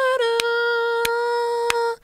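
A man humming one long, steady note, the pitch dipping slightly at the start and then holding. Three sharp clicks sound evenly through it, about two-thirds of a second apart.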